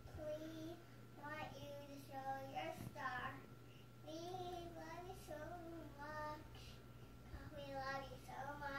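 A young girl singing to herself in short phrases, the tune rising and falling.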